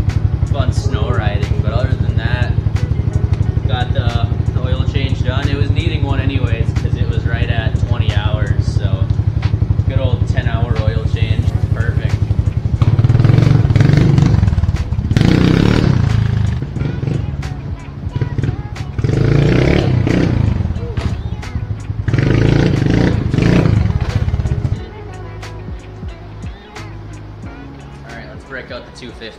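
Kawasaki KLX110's small air-cooled four-stroke single, fitted with a Piranha T4 exhaust, idling steadily and then revved in several surges before it cuts off about 25 seconds in. It is a test run to make sure the engine runs after an oil change with fresh 10W40.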